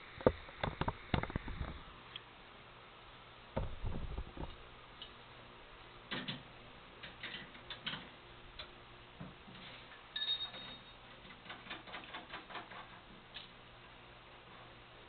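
Steel wrenches working the double bolt on a GS-X pinsetter's transport band: scattered metal clicks and knocks in bunches, a run of quick small ticks near the end, and a brief ringing tone about ten seconds in.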